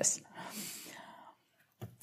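Soft, breathy laughter without clear pitch, fading out over about a second.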